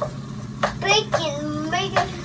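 A young child speaking in a high voice for about a second, over a steady low hum.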